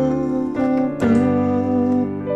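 Keyboard played with a piano sound: a sustained D minor seventh chord, then a G chord struck about a second in, from the song's interlude.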